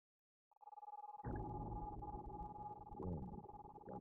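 Film trailer sound design: a steady high tone fades in about half a second in, and a deep rumble joins it about a second in.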